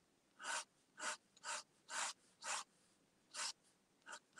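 Pen nib scratching across paper in six quick hatching strokes, about two a second, with a short pause before the last stroke.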